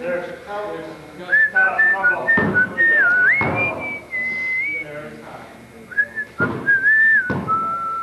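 A person whistling a tune: a single clear high note that steps and glides in short phrases, starting about a second in, with low voices underneath.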